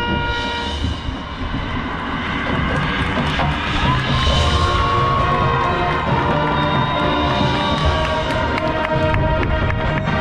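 Marching band playing its field show: a held brass chord cuts off about half a second in, then a stretch with many sharp percussion hits over sustained band sound.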